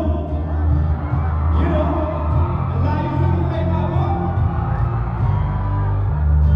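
A man singing into a microphone over loud amplified backing music with a heavy bass line, heard through a concert PA in a large hall, with the audience whooping and cheering.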